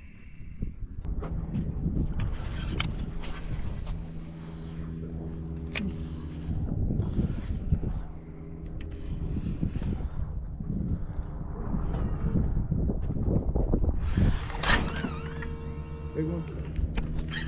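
Electric bow-mounted trolling motor running with a steady hum, under uneven wind rumble on the microphone. A few sharp clicks stand out.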